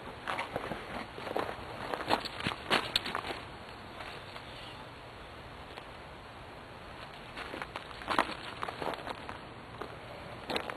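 Footsteps on a gravel path: a run of steps, a lull of a few seconds, then more steps near the end.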